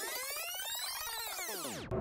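An edited-in synthesized sound effect: a cluster of many tones gliding smoothly up and then back down, steady in loudness, cutting off abruptly near the end.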